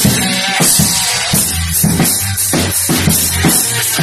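Yamaha drum kit played in a rock beat, bass drum, snare and cymbal hits, over a recorded rock backing track with a steady bass line.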